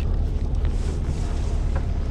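Wind buffeting the microphone: a steady, even rumble.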